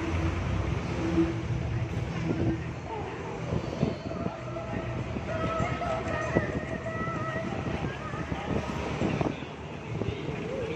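Busy street traffic with buses and other vehicles passing close, and people's voices in the crowd around. A held pitched tone sounds for a few seconds in the middle.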